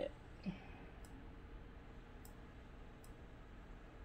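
Computer mouse clicking: three faint single clicks about a second apart while adjusting on-screen text.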